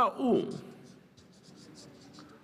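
A felt-tip marker writing on paper: a quick run of short, faint, scratchy strokes as a Chinese character is drawn. A man's voice finishes a word at the very start.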